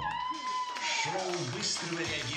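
A live band sounding over the scuffle: one high wailing note bends up, holds for about a second and falls away, with voices underneath.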